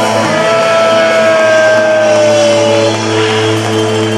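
Live punk rock band holding a loud sustained chord at the close of a song, with a long held note sliding slightly down in pitch over the first three seconds.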